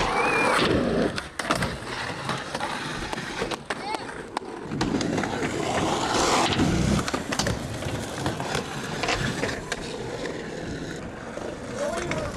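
Skateboard wheels rolling over concrete, the rolling noise swelling and fading as the boards pass, with several sharp clacks of the board against the ground.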